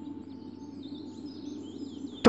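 Faint bird chirps over quiet open-air ambience, with a thin held tone from the background score beneath them.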